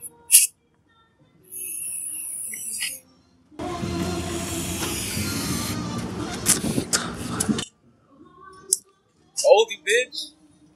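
Aerosol brake cleaner spraying in a steady hiss for about a second and a half, followed by about four seconds of music with vocals that cuts in and out abruptly.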